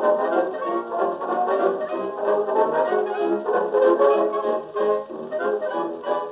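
Instrumental passage of a 1920s dance-band record, with brass, played on a Victor Orthophonic Credenza acoustic phonograph and heard from its horn. The sound is thin, with little bass or treble.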